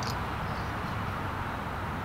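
Steady outdoor background noise with no distinct events.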